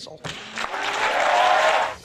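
Audience applause breaking out right after a TV host announces an act, growing louder before it cuts off near the end.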